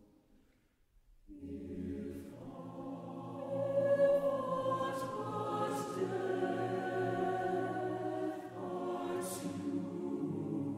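A choir singing a slow piece in long, held chords, starting about a second in after a brief near-silent gap.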